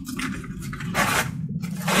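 Wrapping paper and clear plastic crinkling and rustling in several short bursts as a present is unwrapped by hand.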